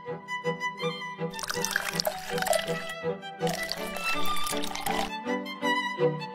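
Background music with a steady repeating beat, over which Coca-Cola is poured from a bottle into two plastic cups: two fizzing pours of about two seconds each, one after the other.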